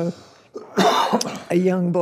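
A woman clears her throat once, a short rough burst about half a second in, between words of her speech.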